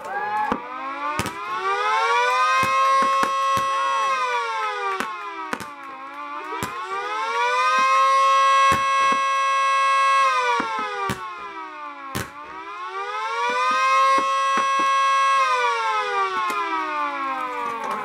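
Mini 2T22 two-tone siren running a fast wail: its pitch rises, holds high and falls three times, about six seconds a cycle. Firework bangs and pops go off through it, the loudest about twelve seconds in.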